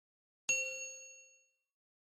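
A single bright chime, a notification-bell ding sound effect, struck about half a second in and fading away over about a second.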